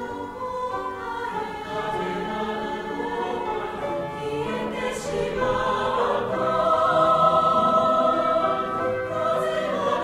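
Mixed choir singing a held, flowing line that swells to a louder sustained chord from about six to nine seconds in.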